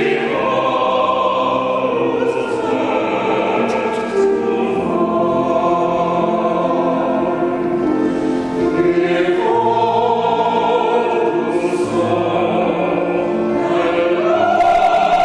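Small mixed choir of men and women singing, holding long chords of several voices that shift every second or two.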